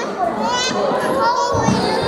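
Overlapping chatter of children playing together with adults talking, the mixed voices echoing in a large hall.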